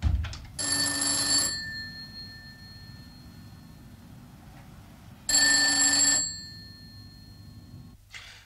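Bell of a rotary desk telephone ringing twice, each ring about a second long and about four seconds apart, with the bell tone fading after each ring. The call goes unanswered. A short low thump comes right at the start.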